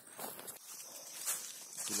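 Footsteps and rustling through vegetation, with the handheld camera rubbing and knocking against a shirt as the person walks; irregular, with no steady tone. A man's voice starts right at the end.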